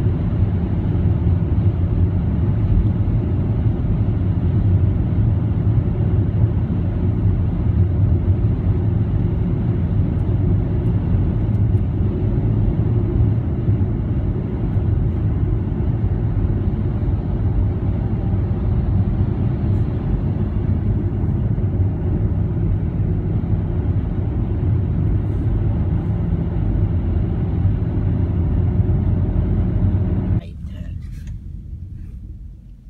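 Steady low rumble of road and engine noise heard from inside a car's cabin as it drives along a highway.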